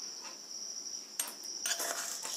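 Mustard seeds in hot oil in a clay pot, giving a few faint sharp ticks about a second in and again near the end, over a steady high-pitched whine.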